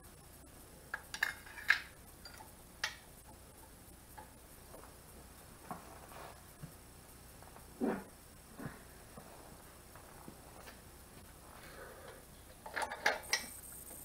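Metal engine parts clinking and tapping as push rods and a rocker arm assembly are handled and fitted on a 1500cc air-cooled VW engine. The clicks come scattered, with a quicker cluster near the end.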